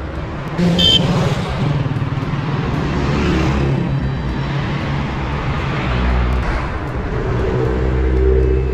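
Road traffic passing close by: car engines and tyre noise, with a brief high squeak about a second in and a car engine's hum growing louder near the end.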